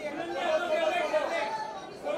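Chatter of several people talking at once, their voices overlapping.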